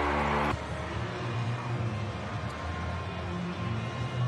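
Stadium music with crowd noise in a rugby league ground after a try. A steady sustained chord cuts off abruptly about half a second in, leaving a quieter mix of crowd and music.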